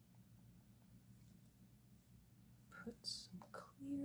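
Near silence over a faint low hum, broken about three seconds in by a brief whisper with a sharp hiss. A short hummed note starts at the very end.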